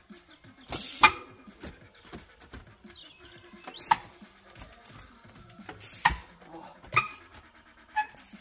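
Trials bicycle hopping along wooden logs: a series of sharp knocks as the tyres land and bounce on the timber, the loudest about a second in and others near four, six, seven and eight seconds, with quieter scuffs and rattles between.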